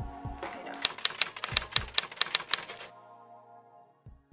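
Typewriter key clicks: a quick, even run of about a dozen sharp clacks over about two seconds, over quiet background music. The clicks stop near the three-second mark.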